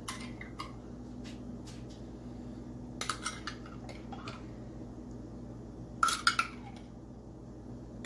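A spoon clinking and scraping while pizza sauce is scooped from a jar into a plastic measuring cup, in three short bursts: near the start, about three seconds in and about six seconds in.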